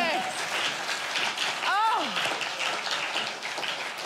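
Studio audience laughing and clapping, with one voice rising and falling sharply just before halfway through.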